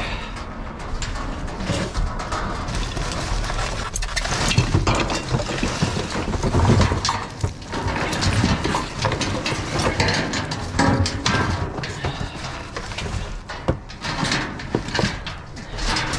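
Scrap being shifted and lifted out of a steel dumpster: cardboard boxes, tangled cables and small hard junk rustling, scraping and clattering, with many sharp knocks throughout.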